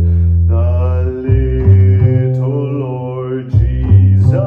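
A man singing in long held notes while plucking an upright double bass, whose deep notes change pitch a few times beneath the voice.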